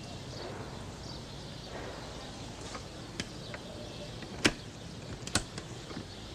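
Steady background noise broken by a few sharp knocks or clicks. The loudest knock comes about four and a half seconds in, and another follows just under a second later.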